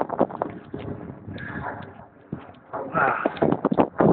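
Irregular clicks and knocks of a handheld camera being handled and swung around, close to the microphone.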